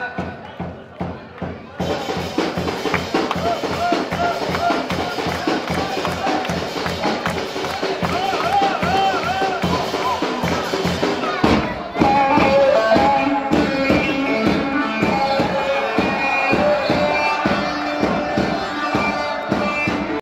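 Live Turkish halay dance music from a saz band: a steady drum beat under an ornamented lead melody. It fills out about two seconds in, and after a brief break about halfway through a louder section starts.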